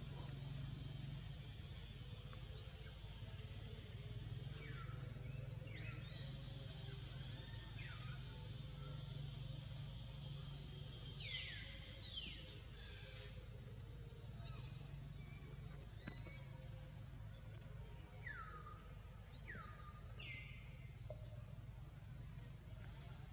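Faint outdoor ambience: a steady low hum with scattered short, high animal chirps that fall in pitch, several of them clustered near the middle and again near the end, over lighter high twittering.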